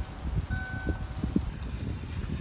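A car's electronic warning chime sounding one steady beep about half a second in, part of a repeating chime, over low handling rumble and a few soft knocks.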